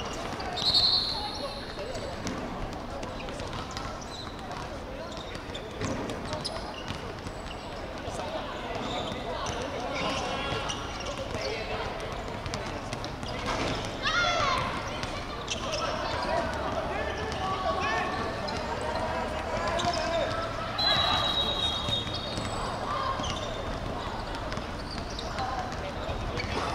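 Players' shouts and calls carrying across an outdoor hard-surface football pitch, with occasional thuds of the ball on the court. A short high-pitched tone sounds about a second in, the loudest moment, and another, longer one comes around twenty-one seconds in.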